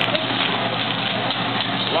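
Egg and fried rice sizzling on a hot teppanyaki griddle, a steady hiss under restaurant chatter. A voice starts singing "la" at the very end.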